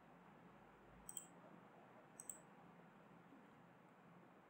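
Two quick pairs of faint computer mouse clicks, about a second in and about two seconds in, over a low steady hiss.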